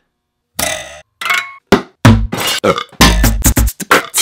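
A short rasping, burp-like noise about half a second in, then a few brief sounds, and from about halfway, music with a heavy bass beat.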